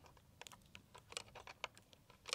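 Faint, irregular small clicks and taps, several a second, as a pulley and its fittings are handled and fastened onto a wooden crossbar by hand.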